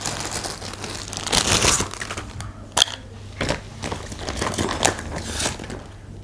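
Clear plastic zip-lock bag crinkling and rustling as asthma inhalers and a plastic spacer are taken out of it, with a few sharp clicks.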